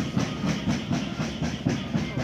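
Carnival dance music carried by a steady, quick drum beat, about four to five strokes a second, under a noisy haze of other band sound.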